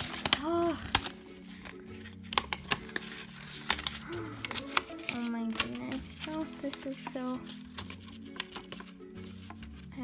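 A folded paper pamphlet being unfolded and handled, with many sharp crackles and clicks of paper, over background music.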